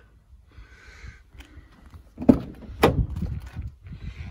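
Land Rover Freelander 2 rear passenger door being unlatched and opened: a light click from the handle, then two sharp clunks about half a second apart as the latch releases and the door swings open.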